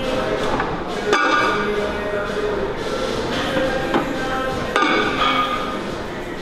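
Metal weight plates clanking as they are handled on a plate-loaded leg press: three sharp metallic clanks that ring briefly, the loudest about a second in, then two more close together near four and five seconds, over background music.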